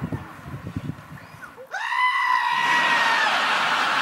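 A black-faced sheep gives one long, loud bleat, starting about halfway through, held fairly level and sagging in pitch as it ends. Studio audience laughter rises under and after it.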